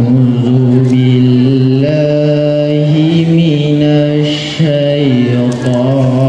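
A boy's voice chanting the opening of a melodic Qur'an recitation (tilawah), holding long notes that glide slowly up and down.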